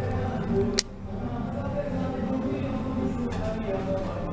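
A single sharp crack about a second in, the shot of a SAG R1000 5.5 mm gas-ram air rifle, over background music.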